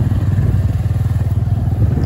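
Motorcycle engine running steadily while riding, a low, even pulsing with no change in revs.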